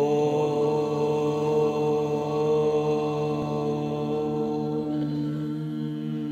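A man chanting one long, sustained "Om" on a single steady low pitch. The open "o" vowel closes into a humming "m" about five seconds in.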